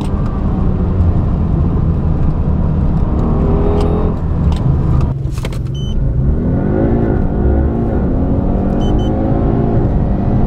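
Twin-turbo V8 engines at full throttle, heard inside the cabin. First a Mercedes-AMG biturbo V8 pulls hard at high revs in fourth gear; about five seconds in the sound cuts suddenly to an Audi twin-turbo V8 accelerating from low speed, its pitch rising and dropping back twice on quick upshifts, then climbing steadily.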